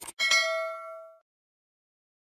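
Subscribe-button animation sound effect: two quick mouse clicks, then a notification bell ding that rings out and fades over about a second.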